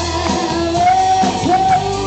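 A live rock band playing, with a woman singing held notes over acoustic and electric guitars and drums.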